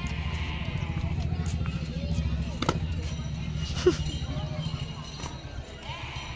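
Low, fast, steady throb of a running motor, fading out about five seconds in, with faint voices in the background and a couple of sharp clicks.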